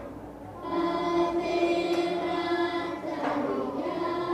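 Singing in long held notes, coming in a little under a second in, with a second phrase starting near the three-second mark: background music.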